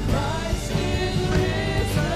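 A live worship band playing: female vocalists singing over keyboards, electric guitar and drums.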